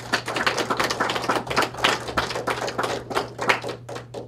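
A small audience applauding, individual claps distinct, starting suddenly and dying away near the end.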